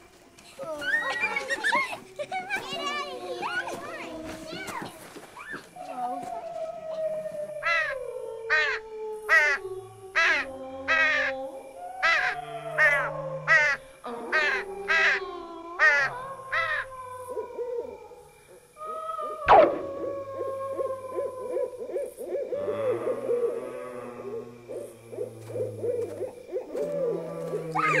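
Layered Halloween horror sound effects: eerie gliding, moaning tones, then a run of about a dozen short, sharp repeated animal calls. A single sharp crack comes about two-thirds of the way in, followed by a long held, wavering drone.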